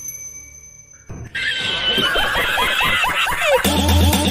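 A loud, wavering call with quick rising-and-falling pitch sweeps begins about a second in. Near the end, music with a steady pulsing beat starts.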